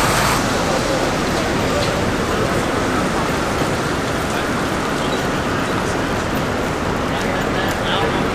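Steady city street noise: traffic and tyres on wet pavement, with the voices of people on the sidewalk.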